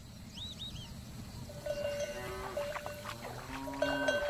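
Cattle bells clanking irregularly, with a few faint bird chirps in the first second.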